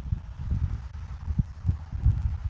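Wind buffeting an outdoor camera microphone: irregular low thuds and rumble, several a second.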